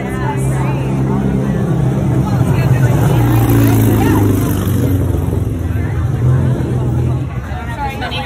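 A motor vehicle engine running with a low steady hum under people talking, growing louder toward the middle and easing off near the end.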